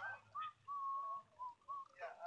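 Someone whistling a simple tune: a few short notes, falling slightly in pitch, with one longer held note around the middle.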